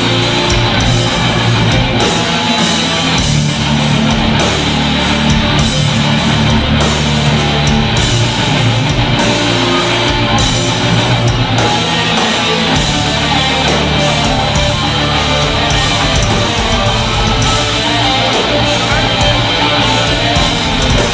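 Live heavy metal band playing loud and continuous: distorted electric guitars, bass guitar and a drum kit with steady cymbal and drum hits.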